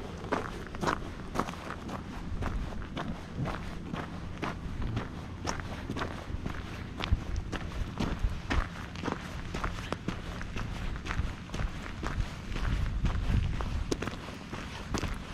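Footsteps crunching on a gravelly desert dirt trail at a steady walking pace, about two steps a second. A low rumble runs underneath and grows louder near the end.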